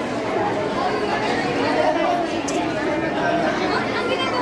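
Steady babble of many overlapping voices: diners chattering together in a busy restaurant dining room.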